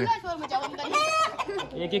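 Aseel chickens calling in the yard, with one loud, high call about a second in.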